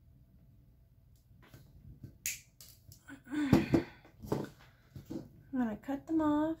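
Wire cutters snipping off the loose ends of sterling silver wrapping wire: several sharp clicks, the first about a second and a half in, the loudest a little after two seconds.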